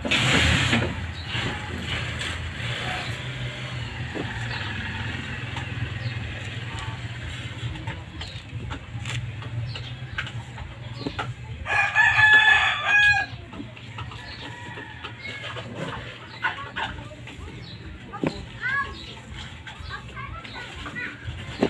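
A rooster crows once, about twelve seconds in, for about a second and a half, over a steady low hum. A short burst of noise comes at the very start, and a few faint bird chirps near the end.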